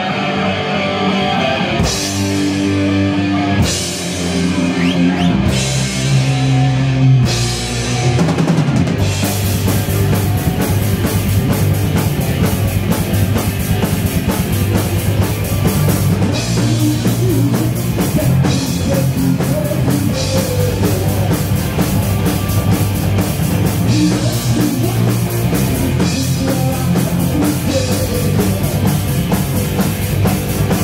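Heavy metal band playing live on electric guitars, bass and drum kit: a song opens with held chords and cymbal crashes about every two seconds, then the full band comes in about eight seconds in and plays on at a steady driving pace.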